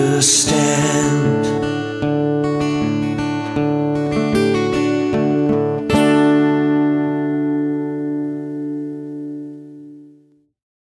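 Acoustic guitar playing the song's closing bars. A last chord, strummed about six seconds in, rings out and fades away.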